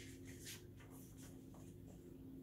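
Near silence, with the faint rustle of a paperback picture-book page being turned and a faint steady hum underneath.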